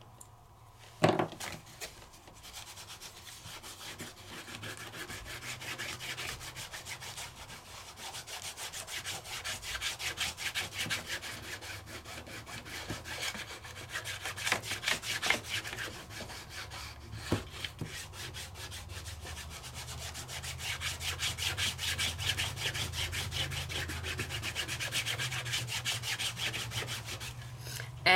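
A small foam ink pad rubbed rapidly back and forth over a cardstock panel textured with dried crackle paste, giving a steady scratchy rubbing. A single click about a second in as the pad's lid comes off.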